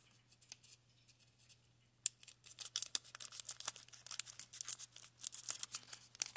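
A foil Pokémon booster pack crinkling and crackling in the hands as it is handled, starting sharply about two seconds in after a near-quiet start.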